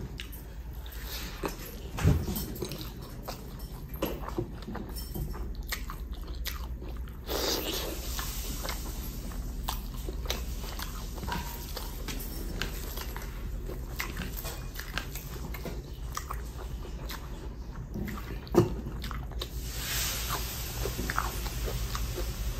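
Close-up eating sounds: chewing and biting a mouthful of rice and egg, with many small wet mouth clicks, while fingers mix rice on a steel plate. Two louder knocks come about two seconds in and near the end.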